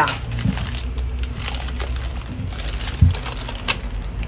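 Baking parchment rustling and crinkling as it is handled around a rolled-up food roll, with a dull knock about three seconds in.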